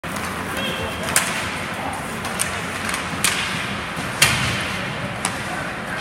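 Ice hockey play in an echoing indoor rink: about five sharp clacks of sticks and puck, the loudest about four seconds in, over steady rink noise with distant voices.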